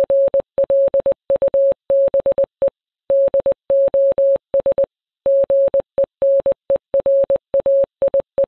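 Morse code: a single-pitched electronic beep keyed in long and short tones, dashes and dots, with brief gaps between them and a couple of longer pauses between groups.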